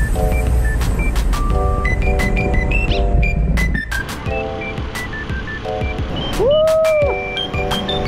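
Background music with held chords, short melody notes and a steady beat. About six and a half seconds in, a sliding tone rises, holds and falls away.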